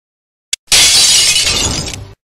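Trailer sound effect: after a short silence and a single tick, a sudden loud crash of hissing noise, shatter-like, that fades over about a second and a half and then cuts off sharply.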